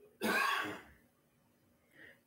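A woman clears her throat once, a short rasping burst of under a second.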